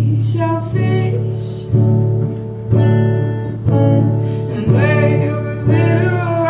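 Woman singing to her own acoustic guitar, strummed chords landing about once a second under the sung melody.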